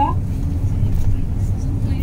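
Steady low rumble of a coach bus's engine and road noise, heard from inside the passenger cabin while the bus drives.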